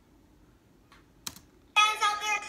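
Two short clicks a little after a second in, like a computer key or mouse being pressed, then near the end a girl's voice from the video clip starts loudly as it resumes playing.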